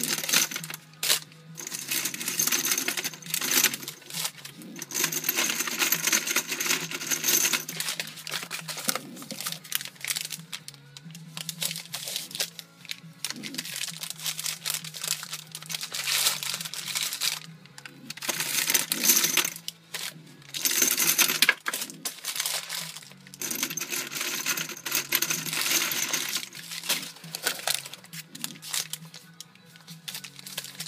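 Brass cartridge cases clinking as they are handled and dropped by the handful into a metal ammo can, in repeated bursts of a few seconds each.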